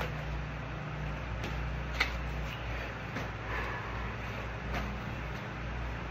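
Steady hum of an electric fan, with a few light taps and clicks as a cardboard pancake-mix box is flipped and caught in the hands, one sharper click about two seconds in.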